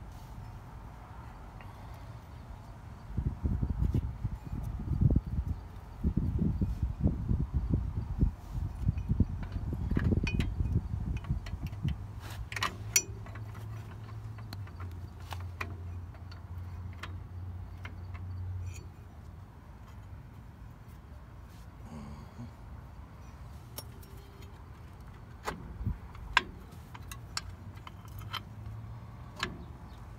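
Hand tools clicking and clinking on metal drum brake hardware as the shoes' springs and parts are worked loose, with a few sharp clinks about twelve seconds in and again near the end. Low rumbling thumps come in the first half over a steady low hum.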